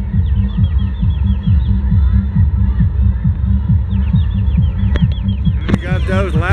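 Deep, fast drumbeat, about four to five beats a second, each beat dropping in pitch.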